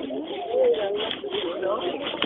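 Indistinct, overlapping voices of people talking, with no clear words.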